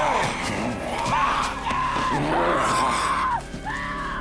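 A woman screaming several times in short, held cries over tense dramatic score music from a TV drama soundtrack.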